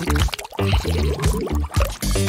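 A sandwich dunked into a glass bowl of water, water splashing and sloshing, over background music.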